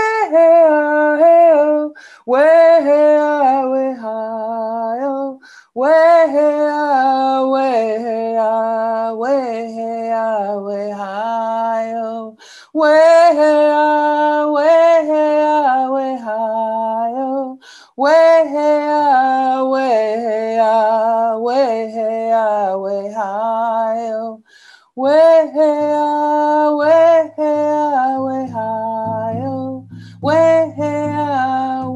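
A woman singing solo, unaccompanied, in phrases a few seconds long with short breaks for breath between them. A low steady tone joins in near the end.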